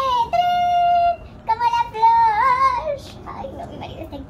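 A woman's voice squealing high, wordless notes in excitement: one held steady for about a second, then a second that wavers up and down.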